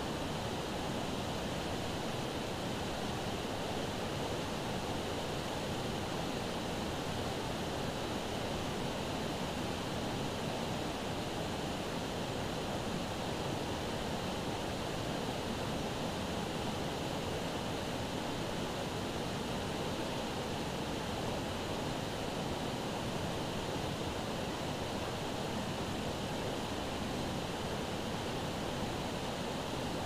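Steady rush of a fast, shallow river running over rocks.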